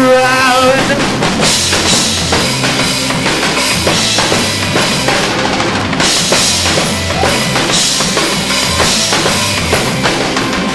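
Live rock band playing an instrumental passage, drum kit prominent over bass and electric guitars; the lead vocal line ends about a second in.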